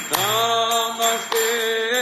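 Devotional kirtan chanting: a single voice slides up into one long held sung note, backed by mridanga drum strokes and a jingling percussion.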